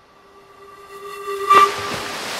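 Logo-intro sound effect: a steady whistle-like tone fades in with a hiss swelling beneath it, building to a sharp hit about one and a half seconds in, after which the tone and hiss carry on.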